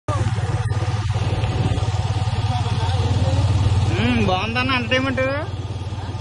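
Motorcycle engine running steadily while riding, a constant low hum with an even pulse.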